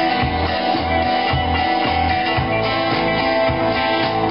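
Live band music: a strummed acoustic guitar over electric bass notes repeating in a steady groove, with drums.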